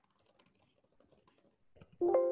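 Near silence, with faint scattered clicks that get a little louder near the end.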